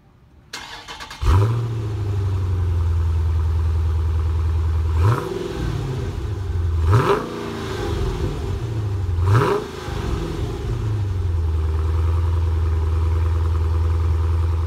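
Dodge Challenger R/T Scat Pack's naturally aspirated 392 cubic-inch (6.4-litre) HEMI V8, heard at the exhaust, starting up about a second in with a loud flare and then idling. It is blipped three times, about five, seven and nine seconds in, each rev rising and falling, before settling back to a steady idle.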